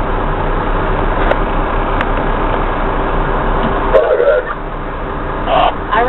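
Steady engine and road noise inside the cab of a fire rescue truck moving slowly, with a brief louder sound about four seconds in.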